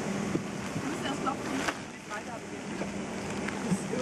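Airliner cabin ambience aboard a parked Boeing 757-300 during deplaning: a steady low hum from the aircraft's cabin systems, with muffled passenger voices and a few light clicks and rustles.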